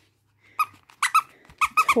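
Squeaker in a soft vinyl Nuby bath book being squeezed: about six short, high squeaks, starting about half a second in and coming faster near the end.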